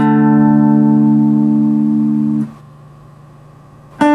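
LTD Viper-50 electric guitar, clean tone, letting the last chord of a slowly played D minor riff ring for about two and a half seconds before it is damped, leaving only a faint low hum. Near the end a fast run of picked notes begins as the riff starts again up to speed.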